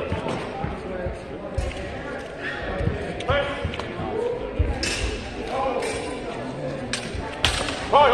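Echoing sports-hall ambience: background voices, thuds of footsteps on the hall floor, and a few sharp clacks in the second half.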